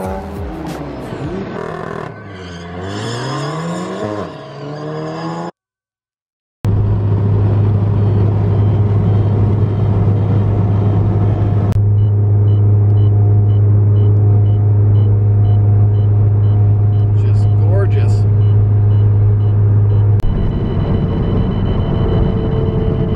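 A turbocharged Golf R four-cylinder revs up and down repeatedly through an autocross run. After a short silent gap, there is a steady, loud low drone of the car cruising at highway speed, as heard from the cabin.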